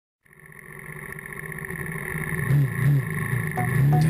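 Single-cylinder four-stroke supermoto engine idling and blipped on the throttle three times, fading in at the start.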